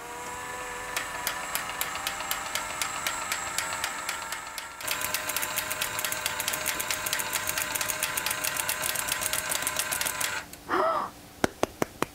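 Small electric motor and gear train inside a motorised Thunderbird 2 model whining steadily with a regular clicking as it extends the landing legs and lifts the fuselage; it grows louder about five seconds in and stops near ten seconds. A few hand claps follow near the end.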